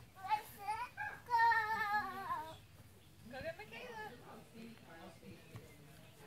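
A young child's high-pitched voice without words: short rising squeals, then one long wavering squeal held for over a second, then quieter babble.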